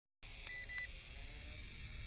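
Two short, high electronic beeps in quick succession about half a second in, over a steady low rumble.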